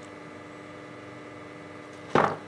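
Steady faint hum and hiss with no distinct sounds: room tone.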